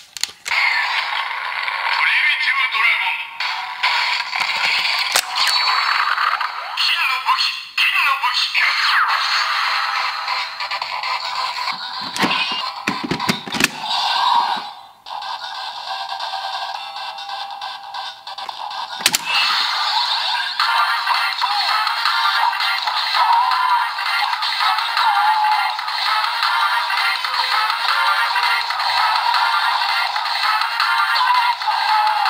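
Electronic sound effects from a DX Kamen Rider Saber toy holy sword linked with the DX Primitive Dragon book. Synthesized announcement voices and music play through the toy's small, tinny speaker, with a few plastic clicks from its buttons and parts about twelve and nineteen seconds in.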